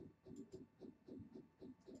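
Near silence: room tone with faint, quick soft ticks, about six a second.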